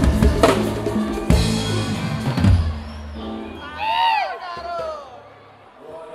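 Live band with a drum kit ending a song: a few final drum and cymbal hits over the first two and a half seconds, the cymbals ringing out after them. A voice calls out about four seconds in.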